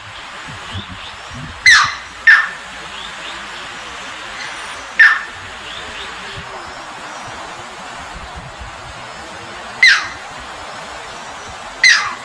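Striated heron giving five short, sharp downslurred calls, two close together about two seconds in and the rest several seconds apart, over the steady rush of shallow flowing water.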